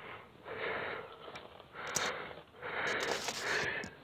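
A person breathing close to the microphone: a few noisy breaths, each about half a second to a second long, with short gaps between.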